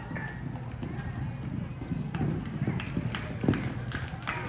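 A horse galloping on soft arena dirt, running flat out on the home stretch of a barrel race. The hoofbeats come in an uneven drumming that grows a little louder as the horse nears, with one loud hoof strike near the end.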